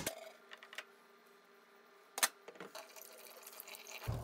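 Metal dental hand instruments being handled at a counter: a few light clicks and one sharp clack about two seconds in, over a faint steady hum.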